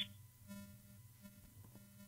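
Faint background music of soft, held tones, barely above near silence.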